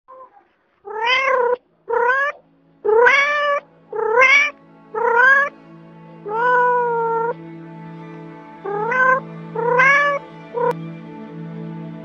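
A domestic cat meowing repeatedly: about eight meows roughly a second apart, most rising in pitch, one longer and more drawn out in the middle, and a brief short call near the end.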